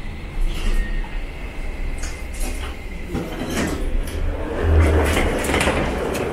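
Low hum of a passenger lift, with the knocks and slide of its doors opening, then hall ambience as someone steps out. The low hum swells about five seconds in.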